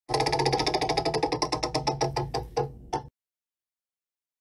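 Spinning prize-wheel sound effect: a rapid run of ticks that slows down as the wheel comes to rest, over a steady low tone, cutting off suddenly about three seconds in.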